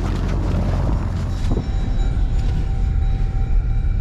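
Jeep Grand Cherokee's engine running, a steady low rumble with a faint steady whine above it.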